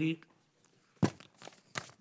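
Paper rustling close to a microphone: a quick cluster of sharp crackles about a second in.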